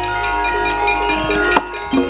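Gamelan ensemble playing: bronze metallophones ringing in layered steady notes over drum strokes, with a sharp knock about one and a half seconds in.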